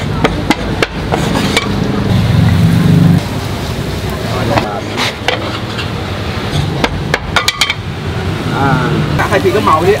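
Sharp taps and knocks, in irregular clusters, from a dough-stick vendor's tools striking a floured table as he shapes and cuts the dough. A steady low rumble runs underneath, and voices come in near the end.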